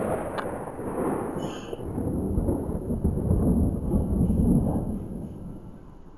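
Thunder rumbling after a close crack: a long low roll that swells through the middle and fades away near the end.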